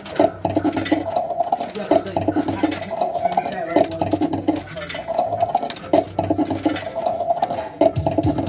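Fruit machine's electronic sound effects, a repeating run of short tones broken by clicks, as its plays meter counts up inserted credit ahead of a spin.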